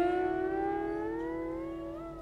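Siddha veena, a lap-played slide instrument, holding one plucked note that the slide bends slowly upward as it fades. A steady lower drone note rings beneath it.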